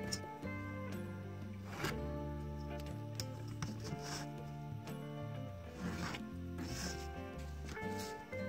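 Background instrumental music, with three brief scratches of a ballpoint pen drawing lines on paper along a steel ruler.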